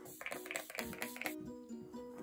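Soft background music with held, stepping notes. Over it, in the first second or so, comes a run of quick spritzes from a pump setting-spray bottle being sprayed at the face.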